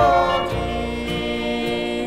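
Gospel duet recording, a man and a woman singing in harmony over instrumental backing, played from a vinyl LP. A short slide down at the start settles into a long held note.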